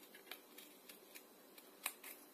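Scissors snipping through brown card: a few faint, short snips, the sharpest one near the end.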